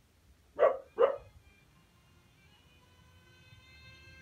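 A dog barks twice in quick succession, two short barks about half a second apart, a little way in.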